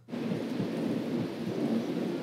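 Model railway trains running on a layout: a steady rumble and rush of small wheels on track. It starts abruptly just after the start.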